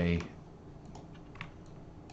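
A handful of faint, separate clicks from a computer mouse and keyboard, irregularly spaced, the clearest about one and a half seconds in.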